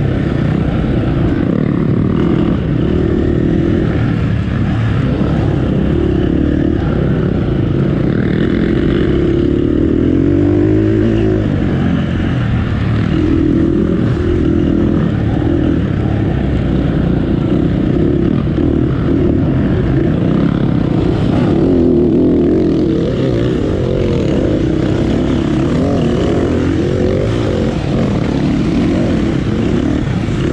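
KTM dirt bike engine, heard loud and close from on the bike itself, revving up and down without a break as the throttle opens and closes.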